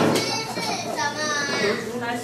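A child's voice speaking, high-pitched, with a short loud noise burst just at the start.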